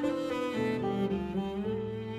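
Slow background score on bowed strings, with long held low notes changing about once a second.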